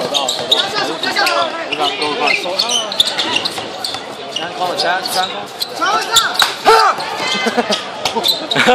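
A basketball bouncing on a hard outdoor court, with sharp bounces at irregular intervals as it is dribbled and played, over the overlapping chatter of players and spectators.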